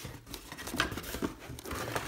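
Cardboard box and polystyrene packing being handled: irregular rustling and scraping with a few short, scratchy bursts.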